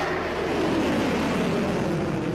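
Steady engine-like roar of a projectile in flight overhead, its pitch slowly falling.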